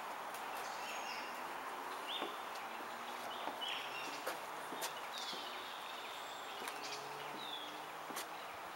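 Outdoor bush ambience: short bird chirps and call notes scattered through, over a steady hiss, with a few light clicks.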